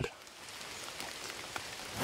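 Rain falling on rainforest foliage: a quiet, steady hiss with a few faint drop ticks.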